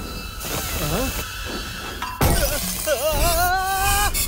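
Film soundtrack: air hissing out of a leak in a spacecraft's hull, with a sudden loud crack-like burst about two seconds in. Wavering, sliding tones with music follow over the second half.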